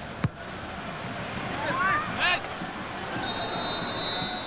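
Football stadium crowd noise with the sharp thud of the ball being struck for a corner kick about a quarter of a second in, the loudest sound. A voice shouts from the crowd around two seconds in, and a shrill steady whistle sounds for the last second.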